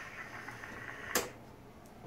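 Faint room tone with a single short, sharp click a little over a second in.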